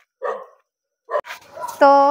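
A dog barks once, briefly, just after the start. A woman's voice begins near the end.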